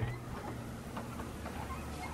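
Quiet room tone: a faint low steady hum with a few soft ticks.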